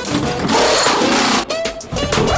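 Pneumatic wheel guns rattling during a race-car pit stop, with a brief break and sharp clicks about a second and a half in.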